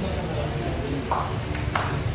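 Pool balls colliding on a billiard table: a softer knock just past halfway, then one sharp, ringing click near the end.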